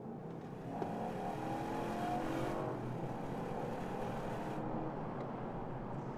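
2015 Holden Caprice V's 6.0-litre L77 V8, heard from inside the cabin under hard acceleration, its note rising in pitch as the car pulls, with road noise underneath.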